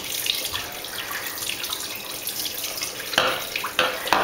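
A steady hiss like running water, then two short sprays from aerosol cans near the end, about half a second apart.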